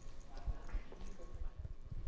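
Handling noise from a handheld microphone being passed from one hand to another: a run of soft, irregular low thumps.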